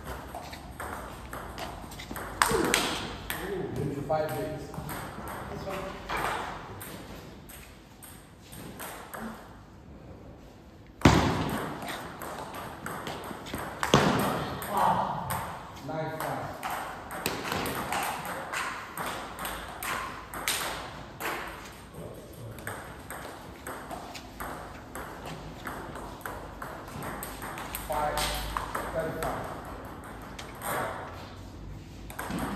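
Table tennis balls clicking against bats and the table in quick rallies, the hits coming in irregular runs. There is a lull for a couple of seconds, then a single loud, sharp knock about eleven seconds in.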